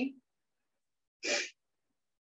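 A single short, noisy burst of breath from a person, lasting about a third of a second, a little over a second in; otherwise silence.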